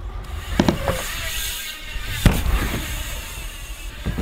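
BMX bike rolling down and across a ramp, its tyres rumbling on the ramp surface, with a few knocks and one loud sharp impact about two seconds in.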